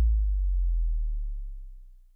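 A deep electronic bass note from the song's closing beat, holding low and fading away to silence over about two seconds.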